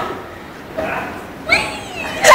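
Girls' high-pitched squealing cries and voices, short calls that slide up and down in pitch, over a steady background noise.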